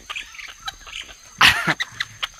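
A monkey gives one short, shrill cry about one and a half seconds in. Light scratching and handling clicks come from the young monkey clambering onto a person's shoulder.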